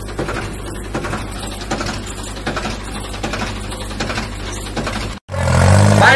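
Steady mechanical running with a low hum and a busy clatter. Near the end it cuts off suddenly and gives way to a tractor engine running loud and hard.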